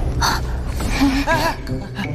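A sharp gasp, then a few short wavering vocal cries from an animated character, over a steady low rumble.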